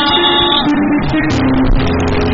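Church band music with guitar and bass holding sustained chords, with short percussion hits along the way.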